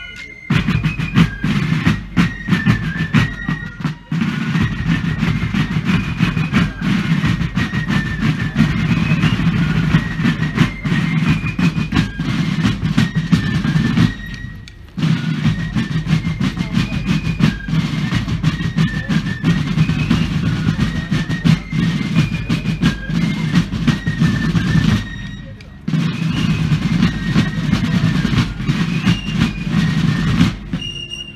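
Massed fife and drum corps playing: shrill fifes carry the tune over rattling snare drums and bass drums, breaking off briefly twice, once a little after halfway and again a few seconds before the end.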